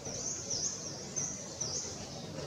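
A bird calling over and over, short high chirps about twice a second, over a low steady background rumble.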